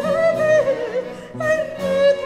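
Soprano singing a baroque Italian cantata, holding long notes with vibrato over a chamber-ensemble accompaniment. The sung line falls away about halfway through, and a new held note comes in shortly after.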